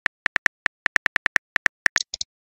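Simulated phone-keyboard typing clicks, a quick irregular run of about six or seven taps a second as a text message is typed out. Right at the end comes a brief, higher-pitched sound as the message is sent and the input box clears.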